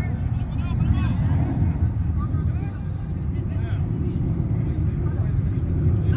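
Distant shouts and calls of football players on the pitch, over a steady low rumble.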